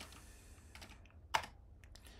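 Typing on a computer keyboard: a few faint keystrokes, with one sharper, louder key press a little past halfway.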